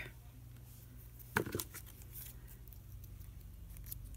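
Scissors making a few faint snips as they trim a small piece of cardboard.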